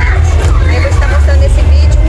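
A woman's voice speaking close into a small handheld clip-on microphone, under a heavy, steady low rumble on the microphone.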